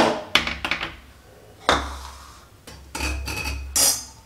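Steel kitchen utensils clinking and knocking: a wire-mesh strainer lifted out of a steel pot and set down, with several sharp metal clinks in the first second, another knock about two seconds in, and a rattling clatter near the end.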